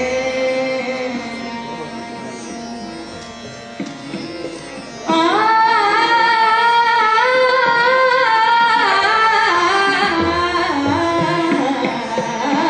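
Hindustani classical vocal music: a woman's voice with harmonium and tabla over a tanpura drone. The first few seconds are softer, then about five seconds in the voice comes in loudly with long, gliding held notes, the harmonium following the melody.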